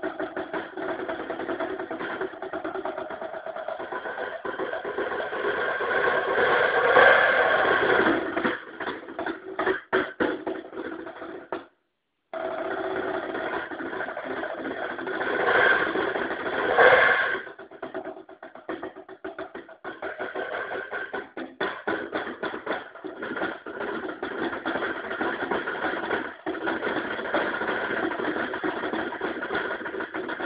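Solo percussion on a drum kit with cymbals and gongs: rapid stick strokes and rolls merge into a dense ringing wash that swells to a loud peak twice. The sound cuts out for a moment about twelve seconds in. It is recorded through a camera phone's microphone.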